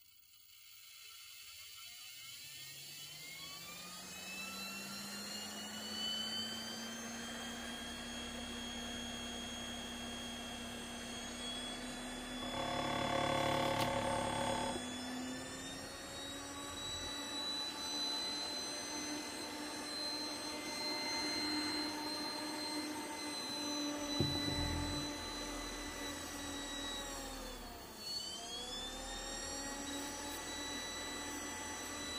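Computer case fan driven by a DVD drive's brushless spindle motor through a hobby ESC, spinning up with a whine that rises in pitch over the first several seconds, then running steadily at high speed with a whir of air. A knock sounds a little past the middle, and near the end the pitch dips briefly and climbs back as the speed is adjusted.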